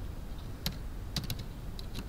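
Computer keyboard being typed: about four or five separate, unevenly spaced keystrokes as a word of code is entered, over a low steady hum.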